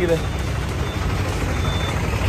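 Bus-station traffic noise: a steady low rumble of vehicle engines from autorickshaws and buses, with a faint thin high beep near the middle.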